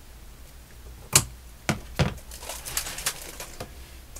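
Scissors snipping through lace trim: three sharp snips in the first half, then a quicker run of lighter clicks and crinkling as the trimmed pieces are handled.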